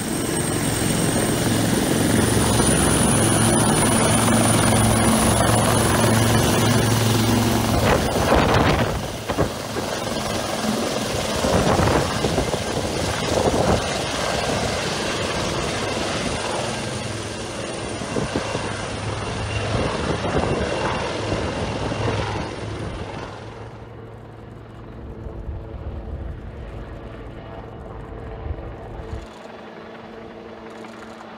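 AW159 Wildcat helicopter running, a high steady turbine whine over loud rotor and engine noise. The whine rises slightly in the first couple of seconds and drops out a little over twenty seconds in, leaving fainter rotor noise.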